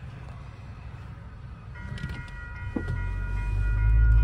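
A train passing a railroad crossing, its low rumble swelling louder over the last second or so. A set of steady high tones comes in about two seconds in.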